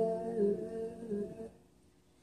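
A woman's voice humming a steady held note, fading out about one and a half seconds in, followed by a brief silence.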